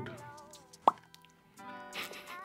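Soft background music with a single short pop sound effect just under a second in, rising quickly in pitch, as an on-screen caption pops up.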